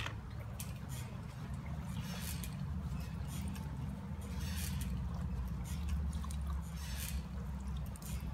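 Permethrin solution dripping and trickling back into a plastic bucket from a soaked garment held up over it, in scattered irregular splashes. The garment is left to drip on its own rather than wrung out.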